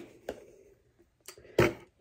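Cardboard box being opened by hand: a faint click early, a few small ticks, then one short, louder scrape of the cardboard flaps about one and a half seconds in.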